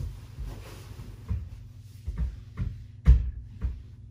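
A hand knocking on a wall: about six irregular dull thumps, the loudest about three seconds in.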